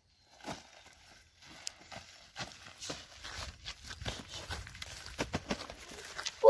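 Crinkling of the newspaper wrapping on a tube snake trap as it is handled, with rustling and steps on dry rice stubble. The crackles and rustles come irregularly and get busier over the last few seconds.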